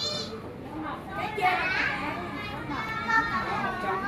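Background chatter of visitors and children, several voices overlapping with no clear words.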